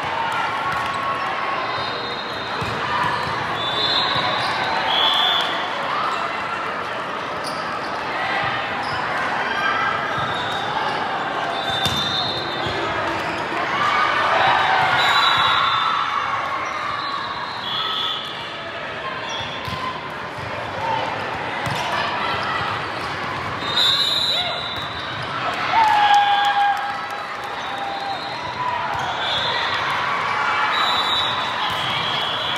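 Indoor volleyball tournament din in a large echoing hall: many voices calling and shouting, volleyballs being struck and bouncing, and short high referee whistle blasts that recur every few seconds.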